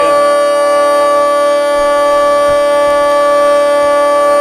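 Hurdy-gurdy sounding as its crank turns the wooden wheel against the strings. A loud, steady drone of several held pitches, unchanging throughout, with more strings joining right at the start.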